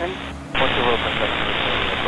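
Air traffic control radio: a burst of even static hiss from a keyed transmission starts about half a second in, with faint garbled voice under it.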